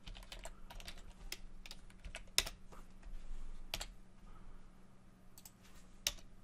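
Typing on a computer keyboard: a run of irregular key clicks, densest in the first two seconds, with one louder keystroke about two and a half seconds in.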